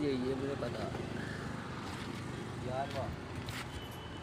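A steady low mechanical hum, like a running motor or traffic, with a brief faint voice at the start and another about three seconds in.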